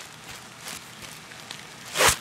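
Faint rustling and handling noise with a few light clicks.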